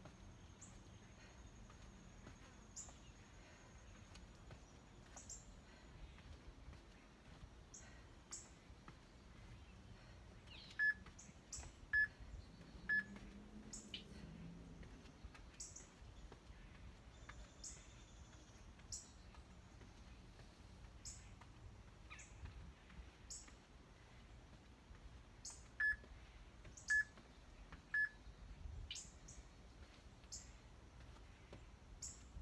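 Workout interval timer beeping three times, about a second apart, counting down the end of a 40-second work set. About fifteen seconds later it beeps three times again, counting down the end of the rest.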